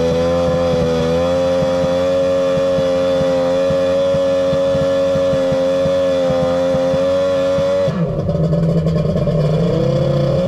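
Kawasaki jet ski's two-stroke engine held at high revs on the trailer, steady and bouncing off the rev limiter because the pump can't get enough water there. About eight seconds in the throttle is let off and the revs drop, then start to climb again near the end.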